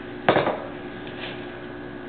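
A single sharp clack of a kitchen dish or utensil set down hard on the counter, ringing briefly, about a third of a second in, over a steady low hum.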